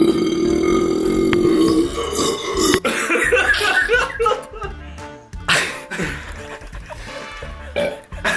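A man's long belch of about two seconds, followed by voices, over music playing in the background.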